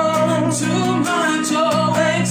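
A man and a woman singing a worship song together over strummed acoustic guitar.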